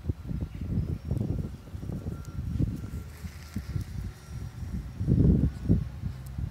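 Wind buffeting the microphone in uneven gusts, a low rumble that swells to its loudest about five seconds in.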